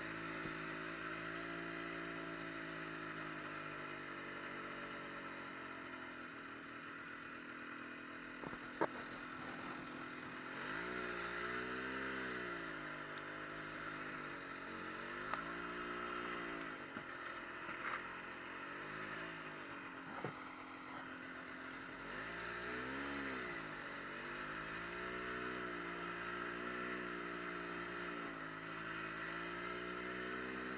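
Snowmobile engine running under way, its pitch rising and falling again and again as the throttle is worked, with a few sharp clicks along the way.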